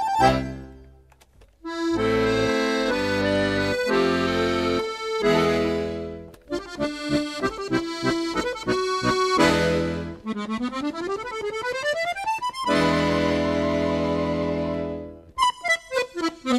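Accordion playing a lively Portuguese traditional dance tune. It opens on full held chords with a brief break about a second in, moves into a passage of short detached notes and a quick rising run, then holds a long chord before short punchy chords near the end.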